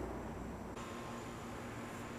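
Faint steady background hiss with no distinct event in it. About three-quarters of a second in, the low hum under it drops away and a thin steady tone comes in.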